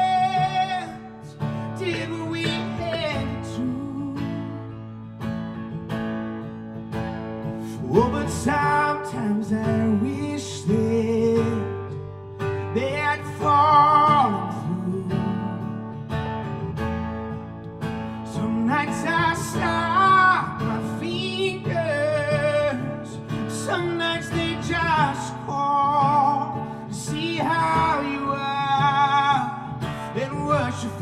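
Live male singing over an acoustic guitar, in sung phrases with held notes and short breaks between lines.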